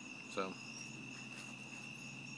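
Crickets chirping in a steady night chorus: one continuous high trill with a fainter, pulsing trill above it.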